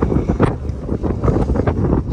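Strong wind buffeting the microphone: a heavy, gusting rumble with short louder blasts, the loudest about half a second in.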